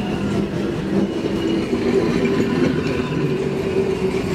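Passenger coaches of a steam train rolling slowly past close by, their steel wheels running on the rails, with a steady low tone under the rolling noise.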